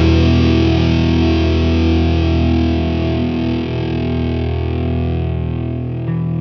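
Rock band recording: distorted electric guitars over bass, holding a long sustained chord that slowly fades away, with no drum hits.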